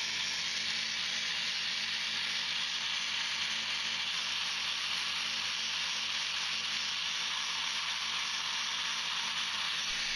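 3D-printed supercharger with a belt-driven planetary gearbox running steadily at high speed: an even hiss of rushing air with a faint low hum underneath.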